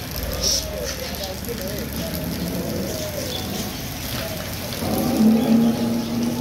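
Indistinct background voices over street noise, with a steadier held tone near the end.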